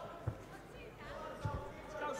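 Arena sound of an amateur boxing bout: a low murmur of crowd voices, with dull thuds from the ring about a quarter of a second in and again about a second and a half in.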